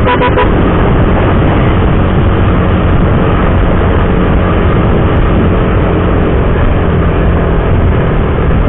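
Loud, steady noise of a motorcycle ride: wind rushing over the microphone, with the motorcycle's engine running underneath.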